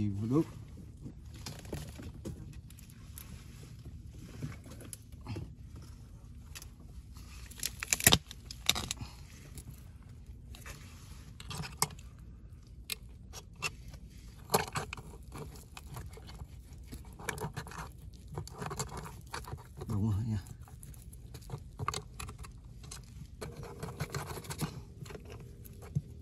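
A crab-catching hook rod probing a muddy crab burrow among tree roots, making scattered clicks and scrapes. The sharpest knock comes about eight seconds in.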